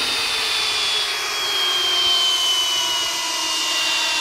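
Flex cordless hammer drill on speed one driving a 10-inch lag screw into a wooden log, its motor running steadily under load with a high whine that slowly sinks in pitch as it bogs.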